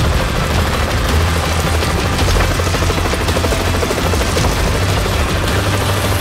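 Helicopter rotor and engine running steadily as the helicopter comes in to land, with music underneath.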